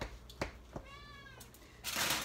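Domestic cat meowing: one short, arching mew about a second in, among a few light clicks, with a burst of rustling starting near the end.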